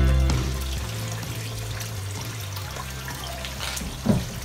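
Music fades out in the first second, leaving a steady splashing of water falling from a small pump-fed waterfall into a filled pond.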